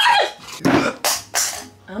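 A woman's short startled cry, falling in pitch, as she nearly sends her scissors into her leg. It is followed by a few short, sharp hissing noises of breath or movement.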